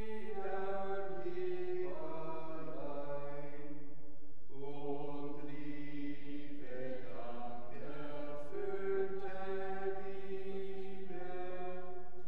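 Slow church hymn music of long held notes over a steady low drone, the chords or notes changing every second or two.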